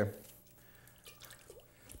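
Near silence: faint room tone, with a couple of faint ticks.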